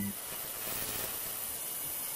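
Steady hissing noise.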